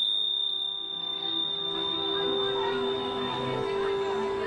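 Tingsha cymbals struck together once, leaving a single high, clear ringing tone that holds on, over soft background music.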